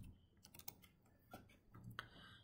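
Faint keystrokes on a computer keyboard, a few separate taps as a word is typed.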